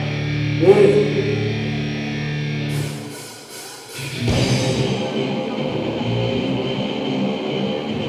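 Live heavy rock band starting a song: an electric guitar chord rings for about three seconds, a few sharp hits follow, and after a brief drop the full band of drums, bass and distorted electric guitars comes in about four seconds in.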